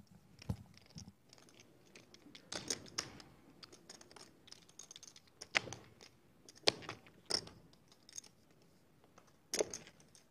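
Poker chips clicking together as a player fiddles with his stack at the table: short, scattered clicks a second or more apart.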